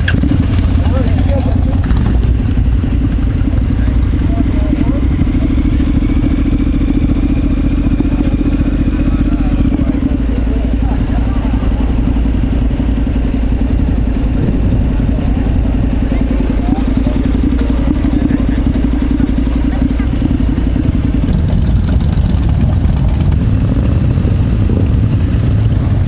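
A Honda CTX700N 670cc parallel-twin motorcycle engine running at idle and low speed, amid other motorcycles running nearby. The low engine rumble is steady and lightens somewhat about three-quarters of the way through.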